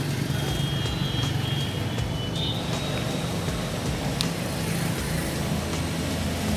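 Steady low motor-vehicle rumble, like road traffic, with a faint thin high tone over it.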